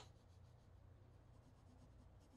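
Near silence: a pencil drawing on paper, very faint, over a low steady hum.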